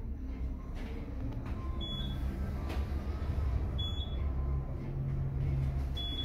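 Otis Gen2 gearless belt-drive traction elevator car running, heard from inside the cab: a low, steady hum that comes up about a second in and holds. Three short high beeps sound about two seconds apart.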